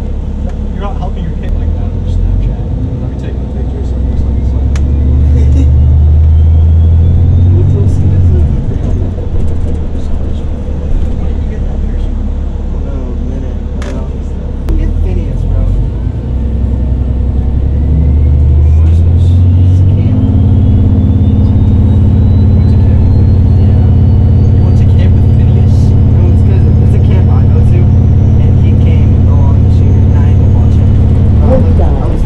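Cabin sound of a 2013 New Flyer XDE40 hybrid bus under way: the Cummins ISB6.7 diesel engine drones low and steady, growing louder about five seconds in and again near twenty seconds in. A thin electric whine from the BAE HybriDrive drive system climbs in pitch twice as the bus gathers speed, first from about three seconds in and again from about sixteen seconds in.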